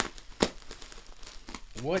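Plastic bubble wrap crinkling as it is cut with a utility knife and pulled apart, with one sharp click about half a second in.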